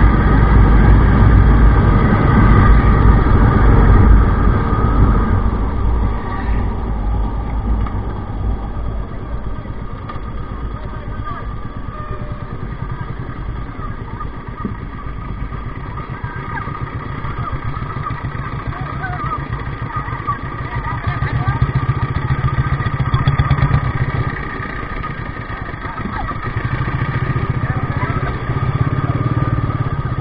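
Motorcycle running on the road with heavy wind rush on the mic, then easing off to a low, pulsing engine note as it slows down after about five seconds, with the engine swelling louder twice near the end.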